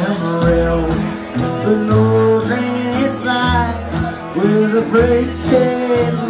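Live honky-tonk country band playing an instrumental break: a lead melody with bending, sliding notes over bass notes and guitar.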